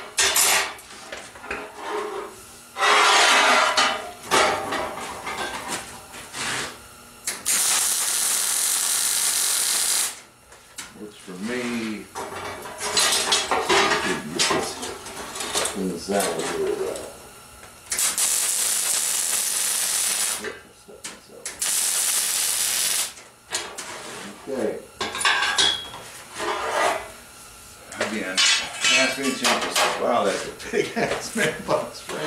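Steel bar stock clanking and scraping on a steel welding table, broken by three bursts of wire-feed (MIG) welding: a steady crackling hiss of about three seconds, then two shorter ones, as the steel is tack-welded.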